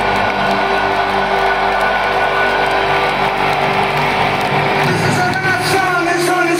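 Rock band's held chord ringing out through arena loudspeakers over a cheering crowd. About five seconds in, many crowd voices rise together.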